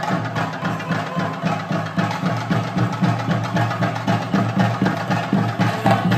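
Fast, continuous drumming on chenda drums, the ritual accompaniment of a theyyam dance, with a steady low drone underneath.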